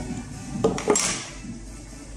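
Two light clicks and then a short scraping rustle as a Samsung Galaxy S21 Ultra is lifted out of its packaging tray.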